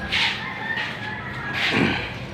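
Two short calls from a bird, about a second and a half apart, the second one dropping in pitch.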